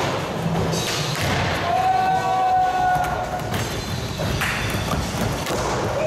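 Skateboards working a wooden box and hard floor: wheels rolling, with several separate thuds of boards landing and knocking. A held tone with overtones sounds for a little under two seconds, starting about two seconds in.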